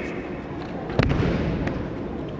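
A single sharp slap and thud about a second in, with a short echo after it: a body landing in a breakfall on tatami mats as an aikido throw is completed.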